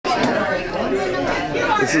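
Crowd chatter: many people talking at once, their voices overlapping into an indistinct babble.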